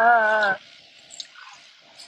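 A man's voice in melodic Quran recitation, holding one long wavering note that cuts off about half a second in.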